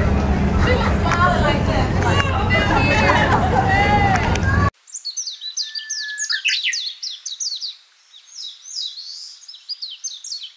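Chatter of several people's voices over a steady low rumble, cut off abruptly about five seconds in; then a songbird singing quick series of high, downward-sweeping notes.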